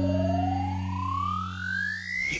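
Electronic dubstep music: a synth sweep rising steadily in pitch, like a siren, over held low synth tones that drop away near the end. It is a build-up rising into the next section.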